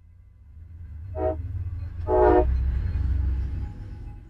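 Two short blasts of a train horn, about a second apart, the second louder and longer, over a low rumble that builds and then fades near the end.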